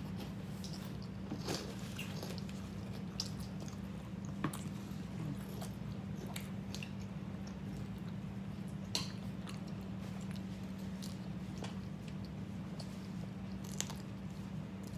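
Biting and chewing of large hoagie sandwiches, with scattered short mouth clicks and smacks, over a steady low hum.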